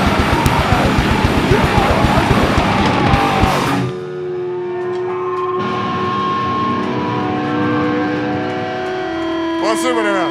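Metal band playing live, with drums and distorted electric guitars, until the song stops abruptly about four seconds in. Held electric guitar tones then ring on through the amplifiers, with a few rising and falling whines near the end.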